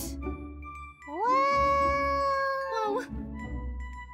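A high-pitched, drawn-out vocal cry from a young woman's voice: it rises at the start, holds one pitch for about a second and a half, then dips and stops. Light background music plays under it.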